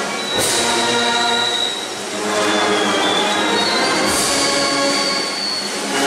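Brass band playing a slow march, with a cymbal crash about half a second in and another about four seconds in, and high held notes over the band.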